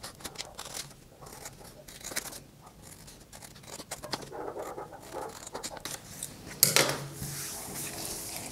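Scissors snipping through brown paper along a pattern outline, an irregular run of short cuts with paper rustling. A single louder knock comes near the end.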